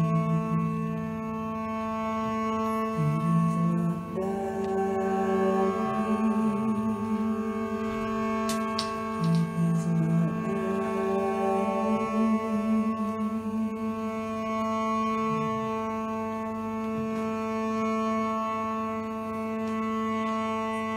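Live instrumental music: a steady, unchanging drone under bowed cello notes that come and go, some held and some sliding in pitch.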